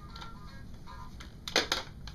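Electronic toy piggy bank playing a short, faint tune, with two sharp plastic clacks from handling the toy about three-quarters of the way through.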